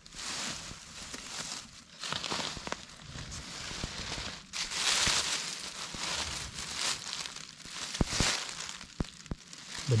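Dry fallen beech leaves crunching and rustling underfoot and under a hand as they are pushed aside, with a few sharp crackles near the end.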